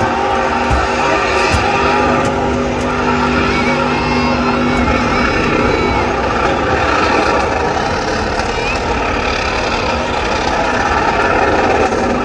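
A car's engine held at high revs during a burnout, making a loud, steady drone.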